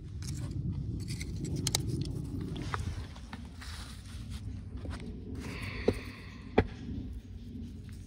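A small metal hand tool scraping and picking at crumbly rock and grit, with many light clicks and two sharp taps of metal on stone about six seconds in, over a steady low rumble.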